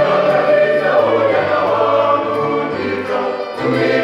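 Mixed choir of men's and women's voices singing in harmony, with held notes over a low bass line.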